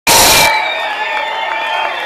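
Concert audience cheering and whistling, opening with a loud half-second burst and then settling into steady crowd noise.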